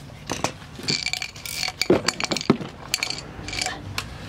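Metal hand tools clinking and knocking against each other as they are handled and picked up: a string of sharp clinks, some with a brief metallic ring.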